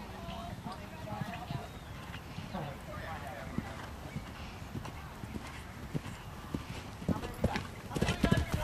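Horse's hoofbeats on a sand arena as a horse canters, the knocks growing stronger near the end as it passes close.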